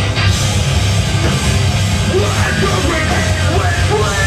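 Live hardcore/screamo band playing loud: distorted electric guitar and drums, with a vocalist yelling over them.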